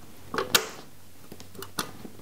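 A few short clicks from the base and switch of a stainless-steel countertop blender being worked by hand, two close together about half a second in and one near the end; the motor does not start.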